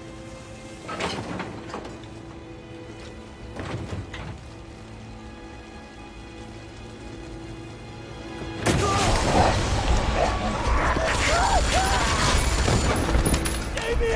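Action-film soundtrack: a tense held music score with two brief thuds, then about nine seconds in a sudden loud blast that runs on as a dense din of rumbling and crashing, with wavering cries through it.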